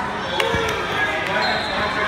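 A single thud about half a second in as the wrestlers hit the mat in a takedown, over the shouting and chatter of spectators.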